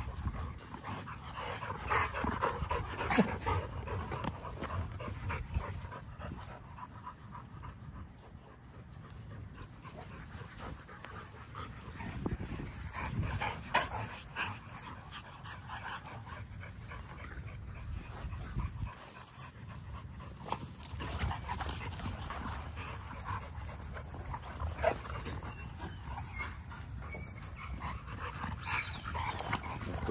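XL American Bully dogs and puppies play-wrestling on grass: panting, scuffling and short dog noises, uneven in loudness.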